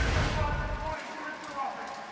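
The tail of a broadcast replay-transition sound effect, a whoosh over a deep rumble, which cuts off about a second in. Quieter arena ambience with faint, distant voices follows.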